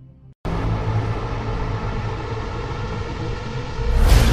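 A brief silent gap, then about half a second in a low, rumbling cinematic music drone starts, holding steady and growing louder just before the end.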